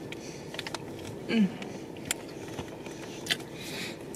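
A woman chewing a bite of soft cookie with a few faint mouth clicks, and a short falling 'mm' of approval about a second in, over the steady low background noise of a car cabin.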